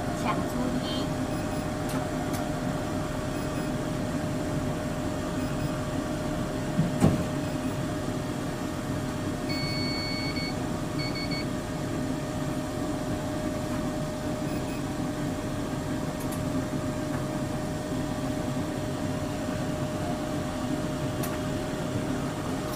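Steady hum of an electric metro train's equipment heard in the driver's cab, with a constant whining tone. A single thump about seven seconds in, and a high beep around ten seconds, one longer tone followed by a short one.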